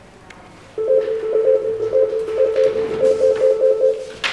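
A mobile phone ringtone starts about a second in: a steady tone with a higher note pulsing quickly on and off over it, an electronic melody.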